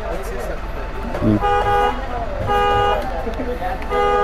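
A vehicle horn sounding three short toots about a second apart, over a low steady rumble.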